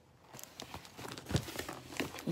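Tissue paper rustling and crinkling as it is handled, with a few sharper crackles, the loudest about a second and a half in.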